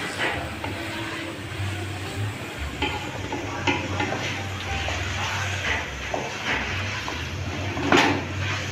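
A wooden spatula stirring and scraping a thick paste frying in a metal pot, with repeated scrapes against the pot and a faint sizzle of the frying.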